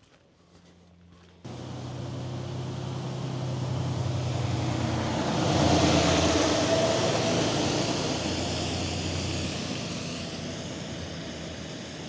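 A flatbed tow truck driving past close by. Its engine and tyre noise cut in suddenly about a second and a half in, swell to their loudest about six seconds in as it passes, then fade as it drives away.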